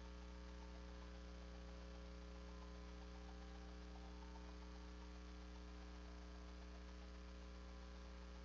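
Steady electrical mains hum with a faint hiss, near silence otherwise.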